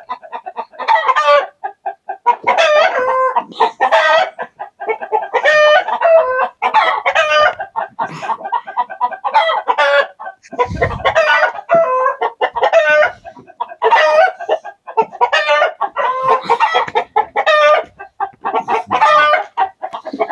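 A flock of backyard chickens calling loudly, one call after another, hens clucking and cackling and roosters crowing. There is a brief low thump about eleven seconds in.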